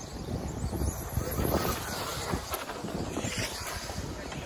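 Wind noise on the microphone over the faint whine of vintage electric 4WD 1/10 off-road RC buggies racing around the track.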